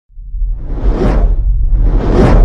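Cinematic whoosh sound effect for a logo intro: a noisy sweep rises out of silence to a peak about a second in, over a steady deep rumble, and a second sweep begins near the end.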